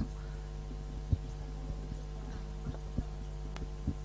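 Room tone in a pause between speakers: a steady low electrical hum with a few faint knocks and clicks.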